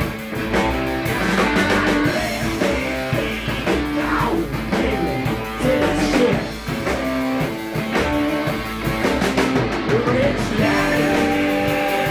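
Live rock band playing loudly: electric guitar over a drum kit, with a singer on a microphone.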